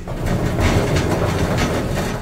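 KONE MonoSpace elevator's stainless steel telescopic sliding car doors opening: a loud, steady rumbling rattle of the door panels running along their sill tracks.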